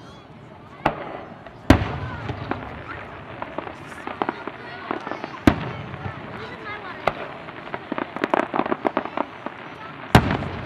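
Aerial firework shells bursting overhead: sharp bangs about a second in and just after, the second the loudest, more at intervals, then a run of rapid crackling pops near the end.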